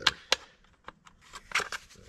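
Several separate clicks and knocks as metal tube legs are worked into the plastic base of a portable clothes dryer.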